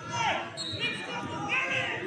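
Shouted voices ringing in a large gymnasium, with scattered low thumps underneath.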